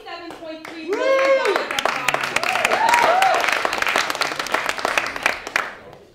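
Audience clapping and cheering, with one long whooping shout about a second in and a few smaller whoops a moment later; the applause dies away near the end.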